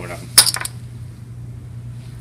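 Poker chips clacking onto the table as a raise is bet: one sharp clack about half a second in, followed by a couple of lighter clicks, over a steady low hum.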